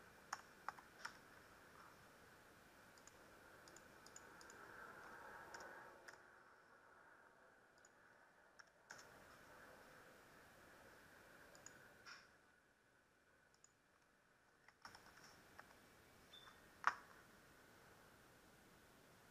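Faint computer keyboard keystrokes and mouse clicks over near-silent room tone. There are a few scattered clicks, and the sharpest comes near the end.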